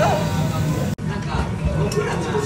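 Busy restaurant background of voices and music, with a woman's short drawn-out exclamation at the start; the sound breaks off sharply about a second in at an edit, then the background resumes.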